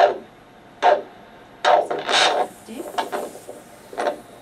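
Handheld vascular Doppler ultrasound giving the ankle artery's pulse sounds through its speaker, noisy beats about one a second, as the blood pressure cuff is let down. The beat coming back marks the ankle systolic pressure.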